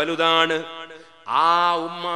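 A man's voice chanting in a melodic sing-song, holding long steady notes, the delivery of a Malayalam Islamic sermon. It breaks off briefly about a second in, then comes back on a note that slides up and holds.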